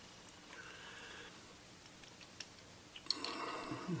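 Quiet room tone with a few faint clicks as two brass cartridge cases are handled between the fingers. Near the end comes a brief, louder soft murmur.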